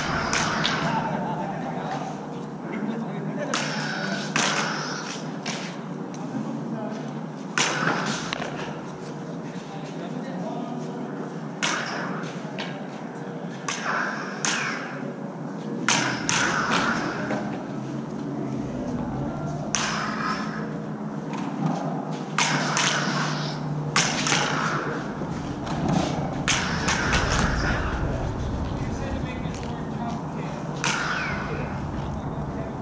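Combat lightsabers' sound boards hum steadily while the polycarbonate blades strike each other. About a dozen sharp clash hits and thuds land at irregular intervals, several in quick succession near the end, echoing off bare concrete walls.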